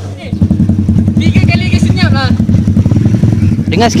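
Honda Dash FI underbone motorcycle engine idling loudly with a steady, even beat. It comes in suddenly about a third of a second in.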